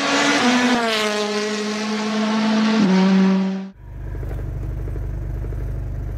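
Logo intro sound effect: a loud pitched, engine-like tone with hiss over it, dropping in pitch in a few steps and cutting off abruptly after about four seconds. It is followed by a steady low drone in the vehicle's cabin.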